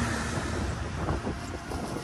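Cargo tricycle on the move: steady road rumble with wind buffeting the microphone.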